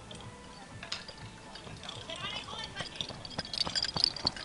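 Faint, distant voices of people talking, with scattered light clicks and knocks.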